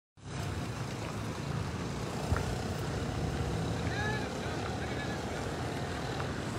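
Steady low rumble of vehicle engines on the street as a van drives past close by, with a single sharp knock about two seconds in and faint distant voices.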